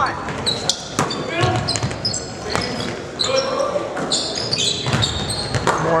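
Basketball bouncing on a hardwood gym floor a few times, with sneakers squeaking as players run the court, echoing in the gym.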